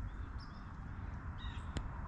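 Outdoor ambience: a few short bird calls over a low, steady rumble, with a faint click near the end.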